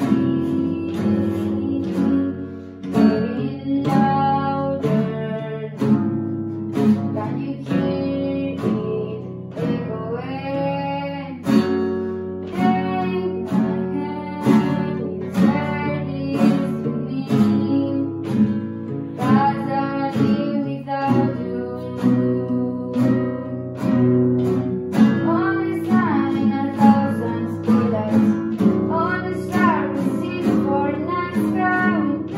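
Nylon-string classical guitar strummed in steady chords, playing a song, with a voice singing the melody along with it.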